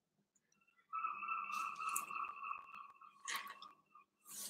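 A steady high-pitched tone comes in about a second in and holds for nearly three seconds before stopping. A brief rustle comes near the end.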